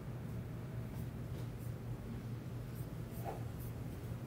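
Steady low hum of background noise with a few faint, light ticks scattered through it.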